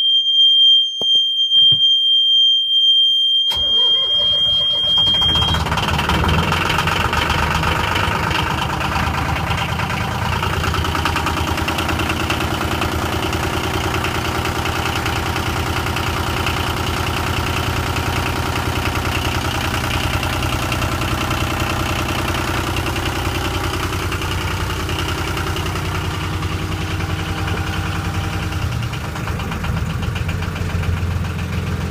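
A steady high-pitched warning buzzer sounds from the engine panel. About three and a half seconds in, the boat's inboard marine diesel starts, and the buzzer cuts out a couple of seconds after the engine is running. The diesel then idles steadily at about 1000 rpm.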